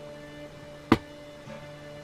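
Guitar background music with held notes. About a second in, a single sharp crack: a Gamo Swarm Fusion Gen2 air rifle firing a .22 pellet.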